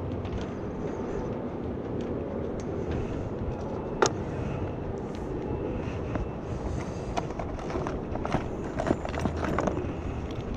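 Hand tools clinking and knocking against the sheet-metal cabinet of an air-conditioning condenser, over a steady background noise: one sharp clink about four seconds in and a run of smaller clicks near the end.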